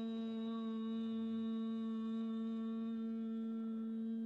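A woman's voice holding the closing "mmm" of an Om chant: one long steady hum on a single low pitch, its upper overtones thinning about three seconds in.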